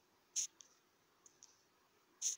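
A single short click about half a second in, then two faint ticks about a second later, over quiet room tone.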